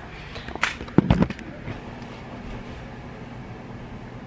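A few sharp knocks and bumps in the first second and a half, the loudest just after one second, as the camera is handled and set in place; then a steady low hum of room tone.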